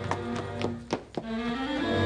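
Film score music with strings: held chords broken by a handful of short, sharp accents in the first second, then sustained notes again.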